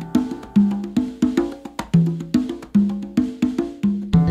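Congas played with the hands in a rhythmic passage: quick strokes, about four a second, moving between drums tuned to different pitches, each open tone ringing briefly.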